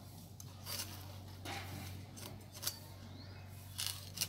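A tapper's knife cutting and scraping at the crown of a palmyra palm: a handful of short, sharp strokes about a second apart, over a low steady hum.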